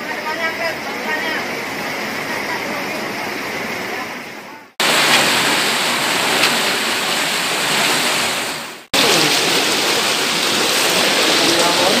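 Fast floodwater rushing and churning over the ground, a steady loud noise of turbulent water. It drops out abruptly twice, about five and nine seconds in, where the footage is cut, and resumes just as loud each time.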